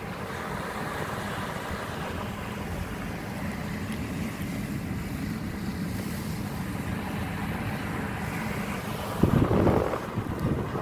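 Steady low rumble and hiss of a car, heard from inside it. About nine seconds in, a louder gust of wind buffets the microphone.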